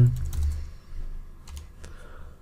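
Computer keyboard typing: a few scattered key presses in two short groups with a pause between, as a name is typed in.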